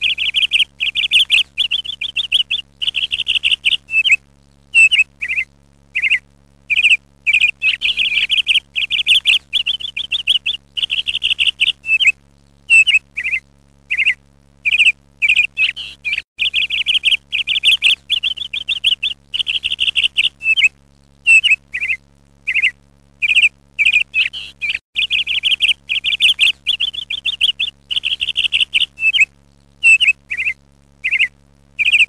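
Birds chirping and trilling continuously in quick, repeated phrases.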